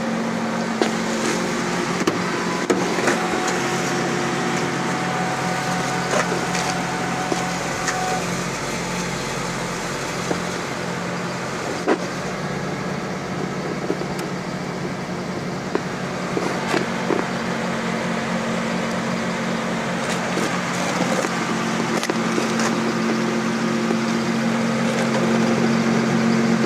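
Steady low mechanical hum with several held pitches, over a background haze, with scattered light clicks.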